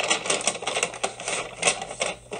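Wrapping paper crackling and tearing in quick, irregular clicks as a present is unwrapped, for about two seconds.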